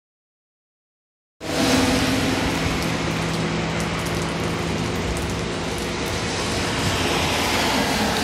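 Heavy rain pouring onto a wet road and pavement: a steady, even hiss that cuts in suddenly about a second and a half in, with a low steady hum underneath.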